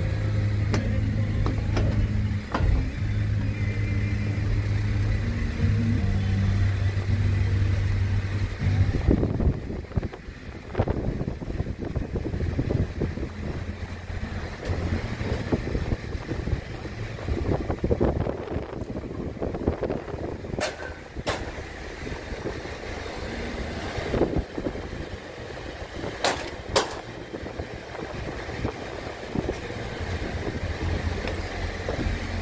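A car driving, heard from inside through an open window: uneven low rumble of tyres, engine and wind, with scattered knocks and clicks from bumps. For the first nine seconds a steady low hum with shifting low notes sits over it, then stops.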